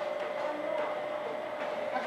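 A steady, unwavering hum of one pitch, under faint murmur of people's voices.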